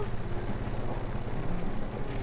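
A small motor vehicle's engine running steadily at low revs, a continuous low hum with a fast, even pulse.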